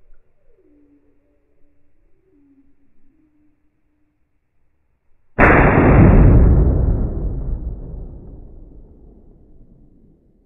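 A Ruger Precision Rifle in .308 Winchester fires one shot, played back in slow motion. A sudden deep boom comes about five seconds in and dies away slowly over about four seconds. Before it there are only faint, low, wavering tones.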